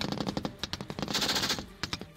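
Automatic rifle fire: a rapid run of shots in quick succession.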